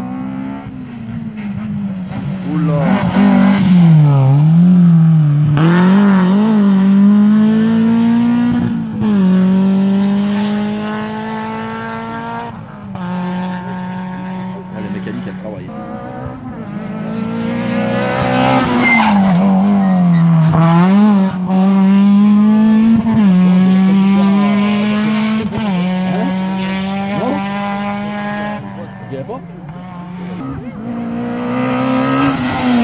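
Rally car engine at full throttle along the stage, its pitch climbing through the gears. Twice it dips and wavers down and up, once about three seconds in and again about eighteen seconds in, then pulls again.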